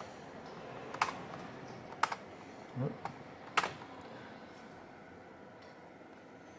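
Three separate sharp clicks of a computer mouse button, spaced unevenly over a few seconds, over a faint steady background noise.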